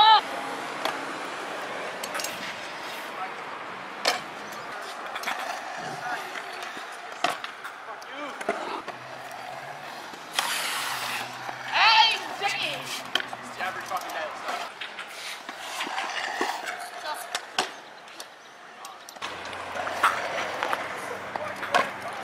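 Stunt scooter wheels rolling over a concrete skatepark, with repeated sharp clacks of the scooter's deck and wheels hitting the concrete on landings.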